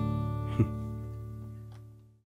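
Acoustic guitar's last strummed chord ringing and slowly fading away, with one short knock about half a second in.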